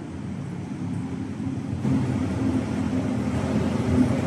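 Steady low rumble of city traffic heard from high above, growing a little louder about two seconds in.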